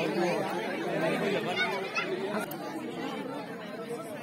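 Spectators chattering, many voices talking over one another at a fairly even level.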